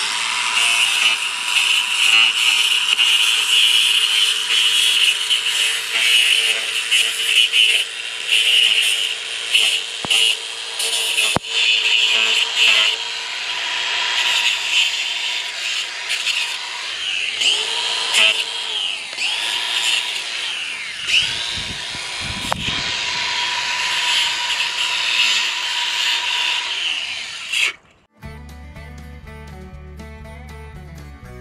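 Air compressor running steadily, feeding a pneumatic stapler used to fasten chicken wire, with a few sharp clicks. The compressor stops abruptly near the end.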